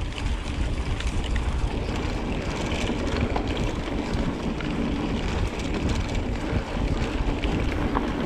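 Wind buffeting a GoPro's microphone while a mountain bike rides along a dirt trail: a steady low rumble of wind and tyres on dirt, with small scattered clicks and rattles from the bike.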